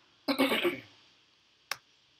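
A person clearing their throat once, briefly, followed about a second later by a single sharp click of a keyboard key.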